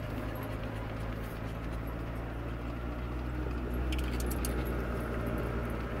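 A vehicle's engine and tyres running steadily at low speed, heard from inside the cabin, with a few light rattles about four seconds in.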